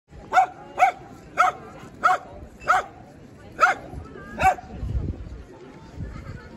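A dog barking seven times in a steady series, roughly one bark every half second to second, each bark short and fairly high-pitched; the barking stops about four and a half seconds in, leaving a low rumble.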